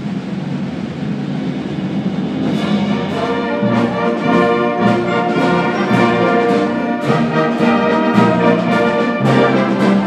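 High school concert band playing, brass to the fore, swelling in a crescendo. From about two and a half seconds in, the band hits accented chords on a steady beat, about two a second.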